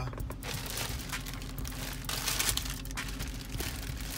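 Thin plastic shopping bag crinkling as a sneaker is moved about inside it, loudest a little past two seconds in.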